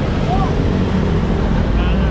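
Steady low rumble of engines idling and street traffic around a stopped motorized tricycle, with a short snatch of a voice about half a second in.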